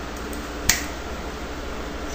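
A single sharp click a little under a second in, over a steady low hum and hiss.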